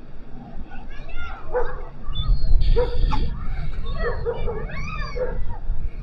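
A dog barking and yipping in short calls, in two clusters. Wind rumbles on the microphone from about two seconds in.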